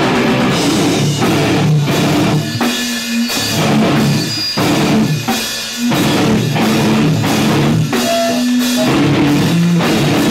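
Hardcore band playing live: distorted electric guitar and a drum kit pounding out a heavy riff, with two short breaks where the low end drops out.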